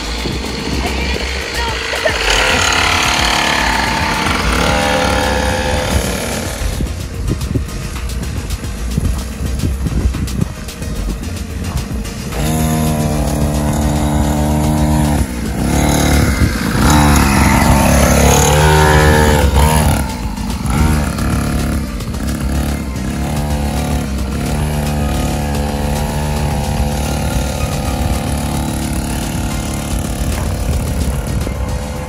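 Small 50cc dirt bike engine running, revving up and falling back as the bike rides and brakes. Background music plays throughout.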